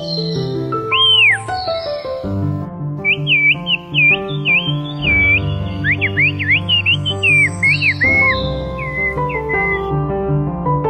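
Whistled Turkish ('bird language') made with fingers at the mouth: a string of high whistles that swoop up and down, first one long arch, then quick dipping notes and a faster run, fading near the end. Soft piano music plays under it.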